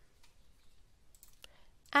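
Faint computer mouse clicks, a few of them about a second and a half in, over near-silent room tone.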